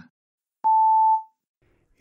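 A single electronic beep from the Aptis test simulator: one steady tone lasting about half a second, about half a second in. It signals that recording of the spoken answer has started.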